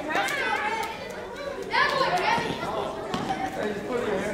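Children's and adults' voices calling out and talking in an echoing gym, with a louder shout about two seconds in.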